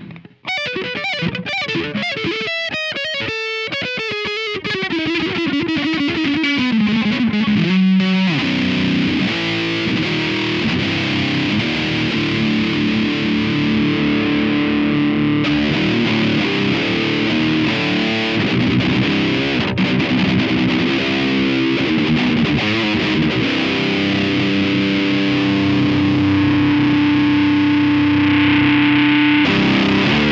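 Electric guitar played through a Leaded Answer distortion pedal. It opens with a fast descending run of single picked notes over the first eight seconds or so. Then it turns to heavy, thick distorted riffing with sustained chords to the end.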